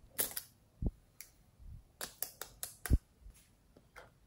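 Sharp clicks and knocks of hard decorated plastic props being handled: a few clicks as the rhinestone lipstick tubes are pulled apart, a dull knock about a second in, then a quick run of clicks ending in a louder thud as something is set down.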